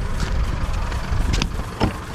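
A steady low rumble, with a couple of sharp clicks in the second half as a ute's door is opened.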